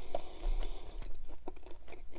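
Close-miked chewing of a mouthful of burger: a steady run of small mouth clicks and soft crunches.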